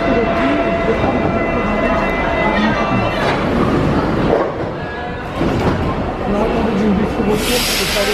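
Paris Metro train standing at a station platform, with a steady whine from its equipment under the voices of people on the platform. A loud hiss starts near the end.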